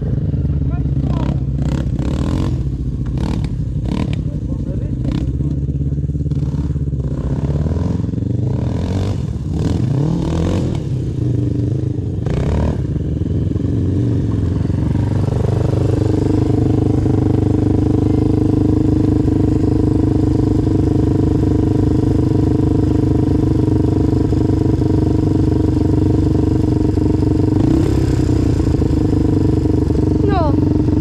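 Quad (ATV) engines running. In the first half, quads run on the track in the distance, with repeated knocks and rustling close by. From about halfway, a quad's engine idles steadily and close up.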